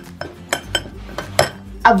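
A handful of sharp clinks and knocks, irregularly spaced, from utensils and bottles handled on a kitchen counter.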